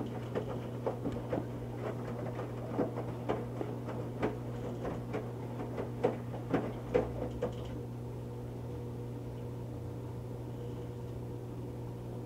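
Electrolux EFLS527UIW front-load washer in the wash tumble with a heavy wet moving blanket. Water splashes and the load knocks irregularly in the drum over a steady motor hum. The knocks stop about two-thirds of the way through, leaving the steady hum.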